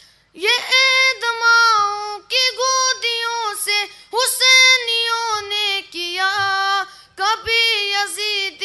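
A high solo voice singing the melody of an Urdu tarana (devotional anthem), in long held phrases with short breaks between them.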